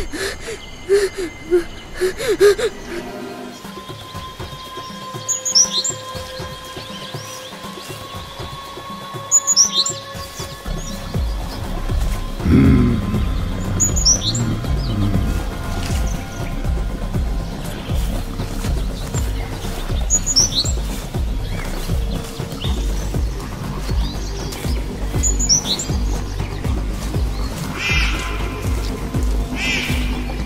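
Birds giving short, falling chirps every few seconds over a forest background, laid under a suspense film score of held tones. About ten seconds in, a low, pulsing drone comes in and carries on to the end.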